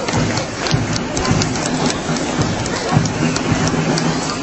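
Outdoor street-parade ambience: a dense wash of noise with many scattered sharp clicks and a steady low hum underneath.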